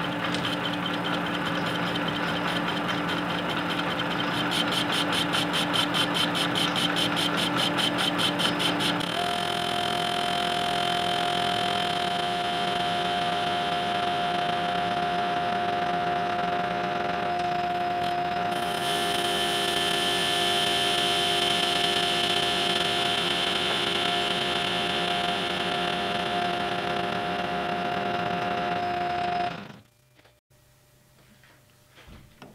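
Metal lathe running while a tool faces the end of a ductile iron workpiece, giving a steady mechanical whine. Its pitch changes about nine seconds in to a strong, higher steady tone, and the sound cuts off just before the end.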